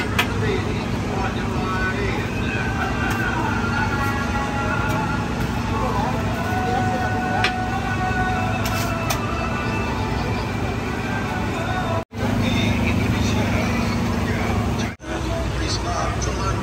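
Busy street-market ambience: a steady low rumble with a constant hum and indistinct background voices. The sound drops out abruptly for an instant twice in the second half.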